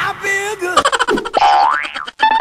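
Cartoon-style comedy sound effects: a boing, then a quick run of clicks and a steeply rising whistle-like glide, mixed with a short voice snippet.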